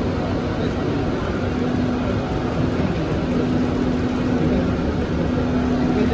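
Steady background din of a busy airport terminal hall, with a low steady hum that fades in and out.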